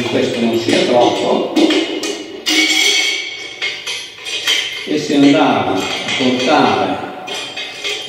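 Metal clinks and a short ringing from a small hand-held steelyard's hanging metal pan and chains as a weight is set in the pan and the beam is brought to balance, mostly between about one and a half and three and a half seconds in. A voice and music sit underneath.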